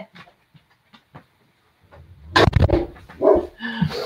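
A dog barking, starting about two seconds in after a near-quiet stretch with a few faint clicks.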